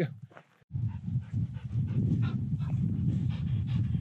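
A bird dog panting close up, over a steady low rumble that starts suddenly about a second in.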